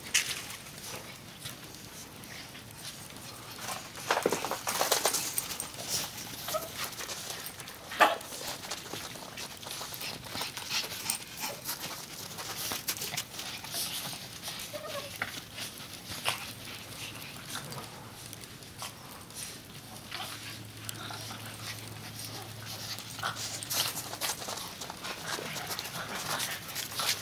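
Several small dogs playing in snow: crunching and scuffling through the snow, with a few brief dog vocalizations. There is one sharp knock about eight seconds in.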